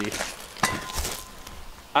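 Handling noise from a camera being moved and set down, with two short knocks.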